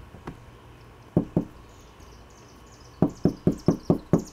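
Knocking on the door of a small white caravan pod. There is a light knock, then two quick knocks, and near the end a fast, even run of about five knocks a second.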